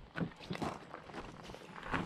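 A few footsteps crunching on gravel and loose rock as a person in boots walks past.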